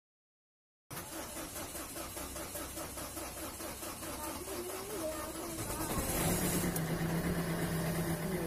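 Ford Figo's diesel engine cranking on the starter with a rhythmic pulse for about five seconds, then catching and settling into a steady idle, now that the air has been bled out of its fuel line.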